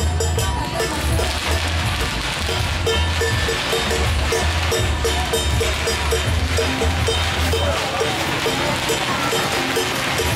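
Procession percussion: a small metal instrument is struck in a steady, even rhythm of about three strikes a second, over a deep, droning beat.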